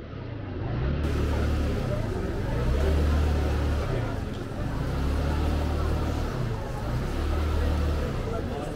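Busy pedestrian street ambience: the voices of passers-by under a general outdoor hubbub, with a deep rumble that swells and fades every second or two.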